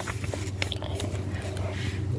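Light rustling and small clicks of a hand handling the book close to the phone's microphone, over a steady low hum.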